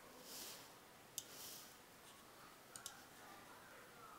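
Near silence broken by a few faint computer clicks: one sharp click about a second in, then two small ones close together near three seconds.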